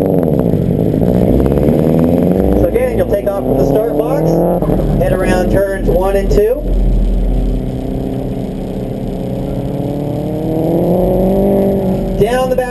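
A Subaru's engine revving and accelerating away from a standing start, its pitch rising over the first couple of seconds, then settling to a lower, steadier engine note as the car drives off down the course.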